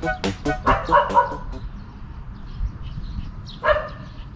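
Small dog, likely one of the Maltese, barking about a second in and once more near the end, over light background music that fades out early.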